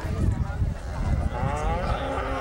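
A Holstein cow mooing once, a single drawn-out call that begins a little past halfway, with people talking around it.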